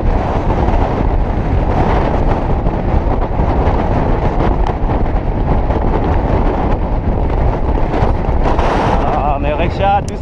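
Loud, steady wind rush on a jockey's helmet-mounted GoPro microphone at racing gallop speed. A man's voice shouts over it in the last second.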